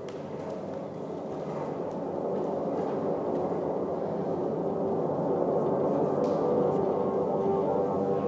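Ambient music with sustained, gong-like tones, slowly swelling louder.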